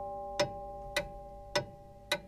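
Clock ticking, a little under two ticks a second, over a fading held chord of bell-like tones.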